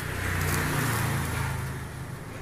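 A motor vehicle's engine drone that swells and then fades, as a vehicle passing by would.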